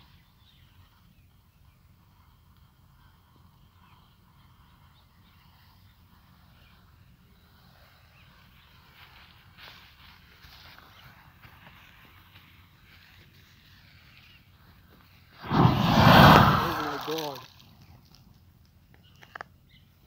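The burning fuse of a small clay pot packed with cut match-stick heads sputters faintly, then the pot goes off about fifteen seconds in with a loud rushing burst that swells and dies away over about two seconds.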